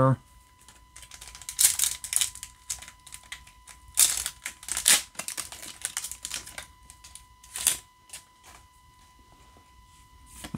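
Trading-card booster pack wrapper crinkling and tearing open, with the cards being pulled out and handled in short irregular bursts of crackly rustling.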